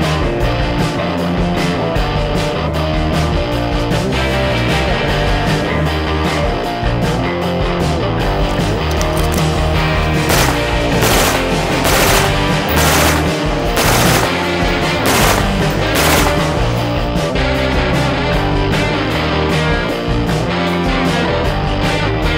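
Rock music with guitar plays throughout. About ten seconds in, a Grand Power M4 select-fire rifle fires a string of about seven shots, each less than a second apart, over the music.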